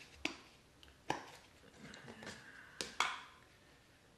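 Snap-on lid of a small plastic tub being pried open by hand: a few sharp plastic clicks and snaps, the last two close together near the end.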